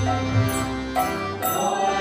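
Devotional bhajan music: a harmonium holding sustained chords while a mridanga drum keeps a beat of about two strokes a second.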